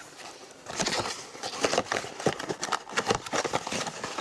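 Small cardboard blind box handled and moved about on a wooden tabletop: a quick run of light knocks and rustling that starts about a second in.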